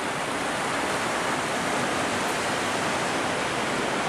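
Fast-flowing mountain river rushing over rocks, a steady unbroken rush of whitewater.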